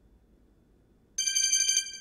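A brief, high trilling ring starting about a second in and lasting about a second, after a moment of near silence.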